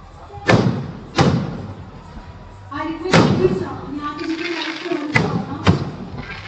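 Aerial firework shells bursting: five sharp bangs with echoing tails, two close together near the end. People's voices come in about halfway through.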